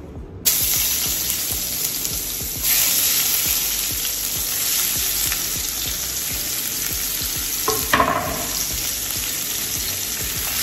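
Sliced onion and chopped greens hitting hot curry-seasoned oil in a stainless steel frying pan: a sudden loud sizzle starts about half a second in and keeps going steadily as the pieces fry and are stirred with a spatula, with a brief louder scrape of the spatula in the pan near the end.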